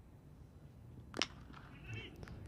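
A cricket bat striking the ball once, a single sharp crack about a second in, over the quiet background of an open-air ground.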